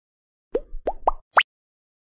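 Logo intro sound effect: four quick rising bloops, each starting and ending higher than the last, the fourth the shortest and highest.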